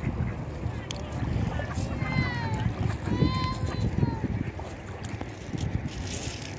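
Wind buffeting the microphone at the water's edge, a steady low rumble. Two high-pitched calls rise above it: a short falling one about two seconds in, and a longer one that rises and falls about a second later.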